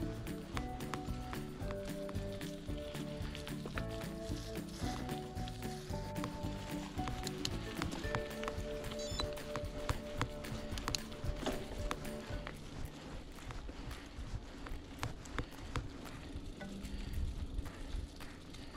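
A melody of held notes plays over the clatter and low rumble of a mountain bike rolling over a dirt trail. About two-thirds of the way through the music fades out, leaving the rattle of the bike and the rumble of the ride.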